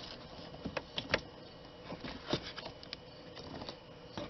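Irregular sharp metallic clicks and knocks of a wrench and hand working on the bolt and fittings of an A/C expansion valve bracket and line block, clustered in the first three seconds.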